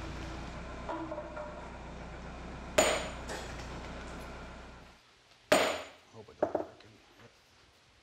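A sledgehammer strikes a handled steel set held against the sawn edge of a granite slab, one sharp loud blow about five and a half seconds in followed by a couple of lighter knocks, rock-facing the edge into a chipped live edge. Before it, a steady low machine hum runs for about five seconds and then stops, with one sharp metallic clank about three seconds in.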